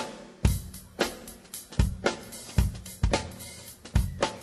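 Live jazz-fusion band starting a piece, with the drum kit loudest: heavy bass drum and snare hits about every half second to a second, with hi-hat and cymbals over a held low note.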